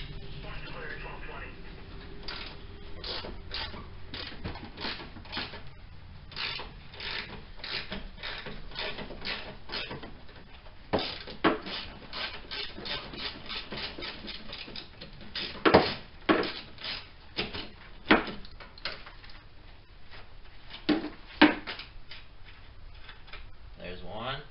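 Hand socket ratchet clicking in quick, even strokes as the nuts on a car's front strut top mount are turned off, with several louder metal clanks from about eleven seconds in.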